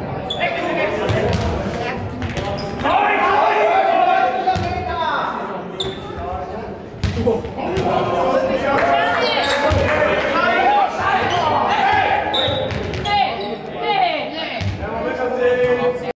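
Players' voices shouting and calling in a large, echoing sports hall, with the occasional thud of a faustball being struck or bouncing on the hard court floor.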